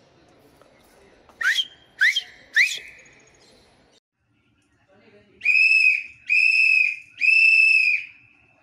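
Whistle blasts: first three quick upward-sliding whistles about half a second apart, then, after a short gap, three long steady whistle blasts in a row.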